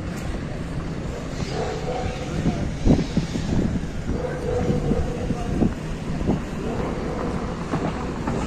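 Street ambience by a road: a steady rumble of traffic with an engine hum, broken by a few short knocks, the loudest about three seconds in.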